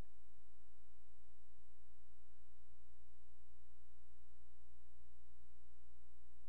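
A steady low electrical hum from the recording's sound chain, with faint constant tones above it.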